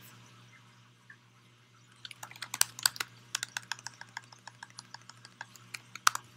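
Typing on a laptop keyboard: a quick, irregular run of key clicks that starts about two seconds in and carries on to the end.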